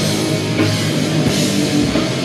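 Black/death metal band playing live at full volume: electric guitars, bass guitar and drum kit together in a dense, unbroken wall of sound.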